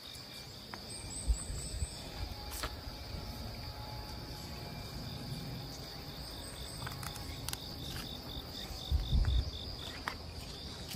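Insects singing steadily in woodland, with a regular series of short chirps, about three a second, joining in over the second half. A few low thumps sound about a second in and again near the end.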